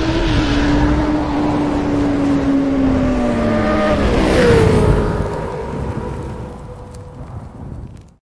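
Intro sound effect of a sportbike engine: a loud, steady engine note that sinks slowly in pitch, a sweeping rush about four seconds in, then fading away and cutting off at the end.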